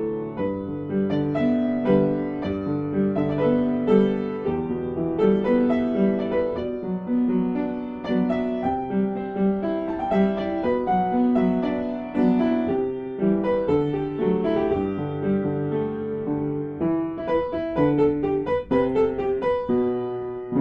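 Background piano music: a continuous melody of sustained notes.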